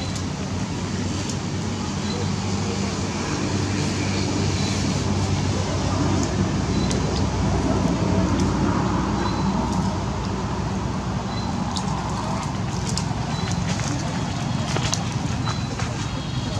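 Steady background noise with a low hum and indistinct voices, with a few faint ticks.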